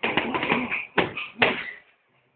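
Boxing-gloved punches landing on a hanging heavy punching bag: a fast flurry of blows in the first second, then two harder single hits about half a second apart.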